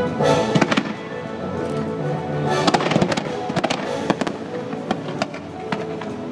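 Fireworks bursting and crackling in quick clusters, about half a second in and again from about two and a half to four seconds in, over the show's music soundtrack playing through loudspeakers.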